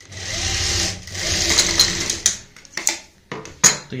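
Industrial single-needle sewing machine stitching pleats down in cotton fabric, running in two bursts of about a second each, then a few short stitch bursts and sharp clicks near the end.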